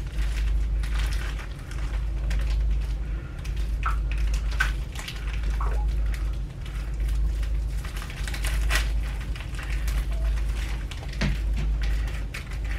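A box of wafer cookies being struggled open by hand: irregular crinkling, tearing and crackling of the packaging that keeps going, over a steady low hum.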